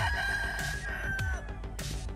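Gamefowl rooster crowing once, a single drawn-out call of about a second and a half that dips slightly in pitch as it ends, over background music with a steady beat.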